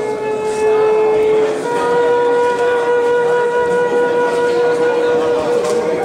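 Transverse flute playing long held notes: one note for about a second and a half, then a slightly higher note held steadily for about four seconds.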